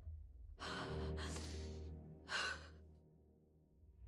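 A woman breathing hard: two long breaths, then a sharper gasp about two and a half seconds in, over a low droning score that fades away near the end.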